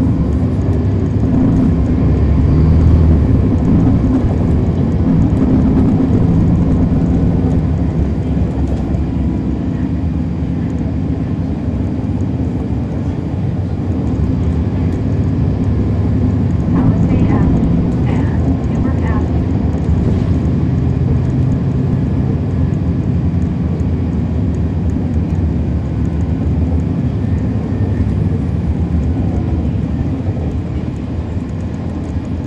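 Cummins ISL9 diesel engine of a 2011 NABI 416.15 (40-SFW) transit bus heard from on board, running under changing throttle, with the engine note shifting in pitch and level as the bus drives. It is driven through a ZF Ecolife six-speed automatic transmission.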